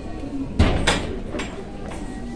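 Three sharp knocks over a low murmur of voices: a heavy, deep one about half a second in, a second soon after, and a lighter one near the middle.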